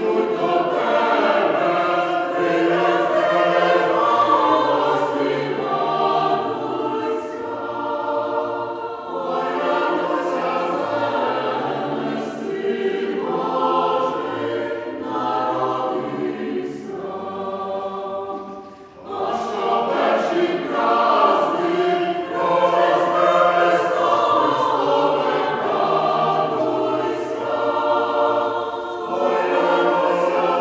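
Choir singing a Ukrainian Christmas carol (koliadka), in sustained phrases with short breaks about nine and nineteen seconds in.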